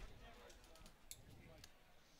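Near silence: faint background hiss with a few faint, short clicks about halfway through.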